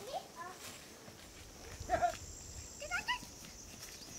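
A few short, high-pitched calls from children's voices: one just after the start, a louder one about two seconds in, and a rising call about three seconds in.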